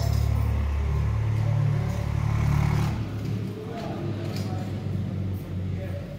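Indistinct voices of people talking over a low rumble that weakens about three seconds in.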